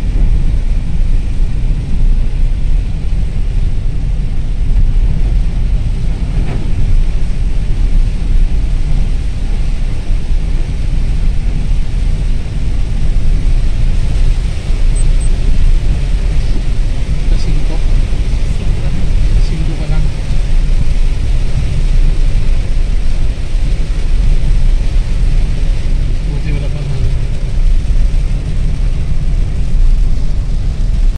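Steady, loud low rumble of a car driving on a wet highway in heavy rain, heard from inside the cabin: tyre and road noise mixed with rain on the car.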